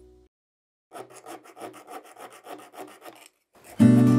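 Needle file rasping back and forth on a Hot Wheels die-cast metal body, quick short strokes about four a second. Acoustic guitar music comes in near the end.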